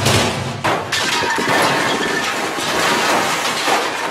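Crashing, shattering sound effects played loudly over the hall's speakers for a staged sword fight. There are a few sharp hits in the first second, then a dense noisy crash that carries on with a faint steady tone underneath.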